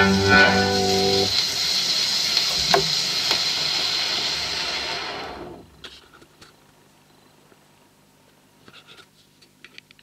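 The final chord of a band-backed square-dance record on a turntable, ending about a second in, then the record's surface hiss and crackle with the needle running on after the music. About five and a half seconds in the hiss drops away, leaving a faint hum and a few soft clicks.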